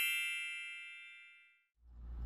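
A bright, bell-like chime sound effect ringing and fading away, dying out about a second and a half in.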